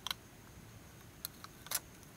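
A few sharp, faint crackles and clicks, one near the start and two in the second half, from a silver foil seal sticker being peeled off a tiny hard drive's metal cover.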